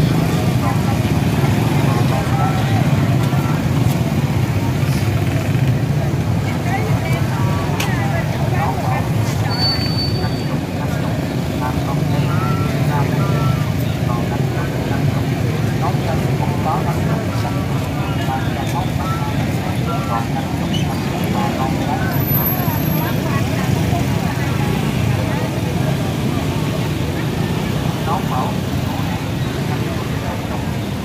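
Motorbike and scooter traffic running steadily, with many people talking at once in the background.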